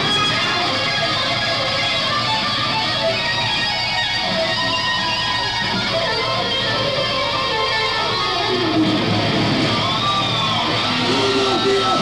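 Electric guitar solo played live through an amplifier, a continuous stream of lead notes.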